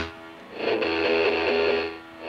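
Semi-hollow electric guitar played through a Fender 4x10 combo amp and heard through a Shure SM57 on the cab: a chord is struck about half a second in and rings for over a second, with a brighter, thinner tone than her homemade speaker mic.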